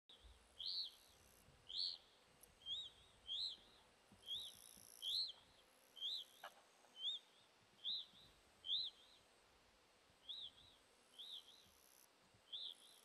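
Juvenile red-crowned crane giving a series of short, high peeping calls, about one a second, each a quick rise and fall in pitch.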